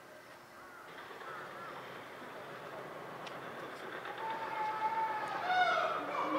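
Background voices of people talking, swelling over the seconds, with a high-pitched voice calling out near the end.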